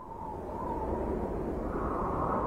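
Intro sound effect of an opening video: a low, noisy rumble that swells up over the first half-second and then holds steady, with a faint tone riding on top.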